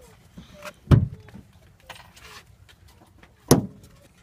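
Two solid thuds, about two and a half seconds apart, from the Nissan NV van's hinged rear door meeting the magnetic hold-open catch on the van's side.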